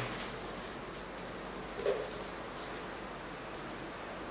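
Low, steady background hiss with a few faint, scattered crackles from an open fire burning in a brick fire pit, and one brief soft sound about two seconds in.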